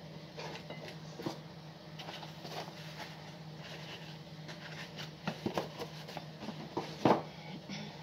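Cardboard egg carton being handled and eggs taken out, with light knocks and a sharper knock about seven seconds in, over a steady low hum.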